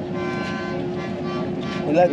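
Steady low drone of a boat's engine while under way, with a brief high-pitched tone over about the first second.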